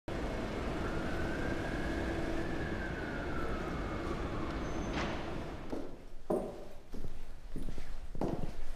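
Steady city traffic noise with a distant siren wailing in one slow rise and fall. A sharp click comes about five seconds in, then footsteps on a hard floor begin about a second later.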